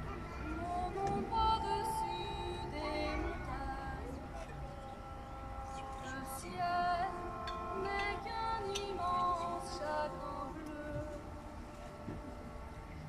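Violin playing a melody of held and gliding notes over a steady sustained accompaniment.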